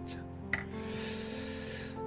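Soft instrumental background music with sustained tones, and a faint hiss that starts about half a second in.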